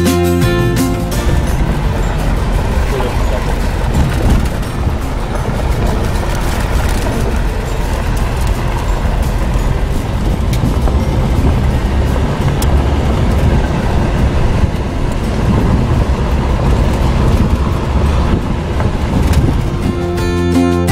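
Steady low rumble of road, engine and wind noise from inside a moving jeep, after background guitar music cuts off about a second in.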